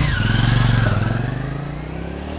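Honda CX650's V-twin engine as the motorcycle pulls away and rides off. It is loudest about half a second in, then fades steadily as the bike moves away.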